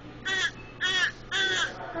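A baby's voice in three short, high-pitched cries, a fussy babble answering the adult.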